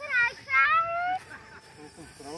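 A child's high-pitched voice without clear words: a short falling call, then a longer call that rises slightly.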